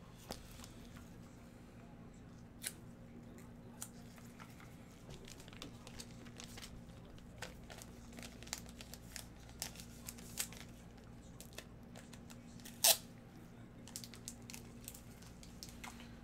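Faint, scattered clicks and light rustling of trading cards and their packaging being handled at a desk, with one sharper snap about thirteen seconds in. A steady low hum runs underneath.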